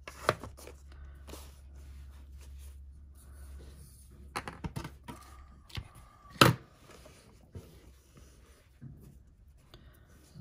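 Handling noise from twine being wrapped and pulled around a small clear plastic box of paper note cards: scattered light rustles, taps and clicks, with one sharp knock about six and a half seconds in, the loudest sound.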